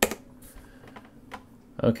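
Clicking at a computer: one sharp click at the start as a Photoshop crop is committed, then a few fainter clicks.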